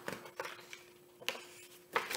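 Paper being handled: a few short rustles and taps as the sheets of a spiral-bound pad are picked up and turned, over a faint steady hum.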